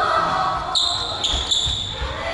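Sneakers squeaking on a wooden gym floor, three short high squeaks in quick succession from just under a second in, with a few dull thuds of feet or a ball beneath them. Voices sound in the hall.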